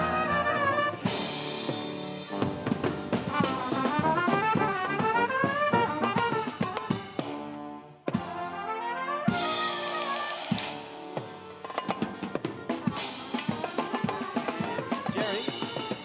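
A gypsy orchestra playing live: fast, wavering melody lines over drum kit, with violin and double bass in the band. The music breaks off briefly about eight seconds in and comes back in on a drum hit.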